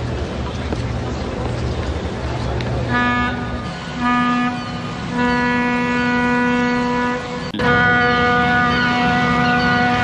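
A ship's horn sounding over a steady low rumble: two short blasts about three and four seconds in, then a long blast of about two seconds, and after a brief break near the end, another long blast.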